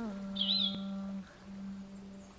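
A low held drone note, stepping down slightly in pitch at the start and breaking off briefly a little past the middle before resuming, with a short warbling bird-like chirp about half a second in.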